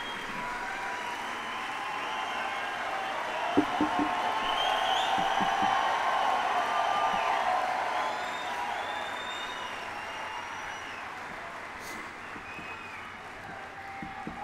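Large audience applauding and cheering with scattered shouts; the ovation swells in the middle and then slowly dies away. A couple of soft thumps a few seconds in.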